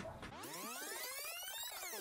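Rewind sound effect: a cluster of tones that sweeps steadily up in pitch, starting about a third of a second in and beginning to bend back down near the end.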